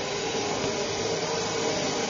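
A steady rushing noise, even in level, like a running fan or blower.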